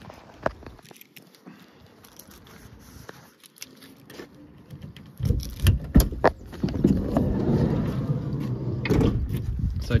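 Ford Transit Custom's sliding side door being unlatched with a few sharp clicks about five seconds in, then rolled open along its track with a steady rolling noise for about three seconds.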